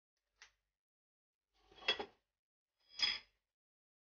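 A faint click, then two short knocks of kitchenware about a second apart, each with a brief metallic ring: a utensil being handled against a cooking pan on the stove.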